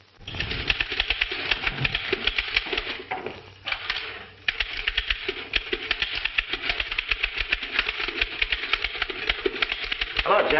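Typewriter keys clattering in a fast, continuous stream of keystrokes, with a brief lull about four seconds in.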